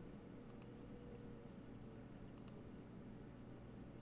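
Two faint computer mouse clicks about two seconds apart, each a quick double tick of button press and release, over a faint steady hum.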